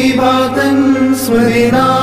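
Male voices chanting a Malayalam Orthodox hymn, the sung line moving between held notes over a steady low drone.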